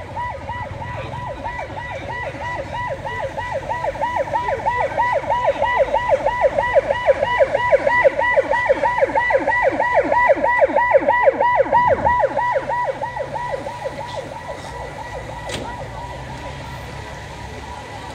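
Emergency vehicle siren in a fast yelp, about four up-and-down sweeps a second. It grows louder, then drops in pitch and fades out about thirteen seconds in as the vehicle passes.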